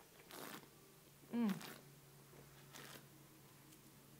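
Faint slurping as a mouthful of white wine is sipped and drawn over the tongue during tasting, with a short falling "mm" from the taster about a second and a half in and another soft slurp near the end.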